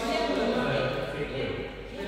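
Indistinct men's voices talking, with no rally sounds.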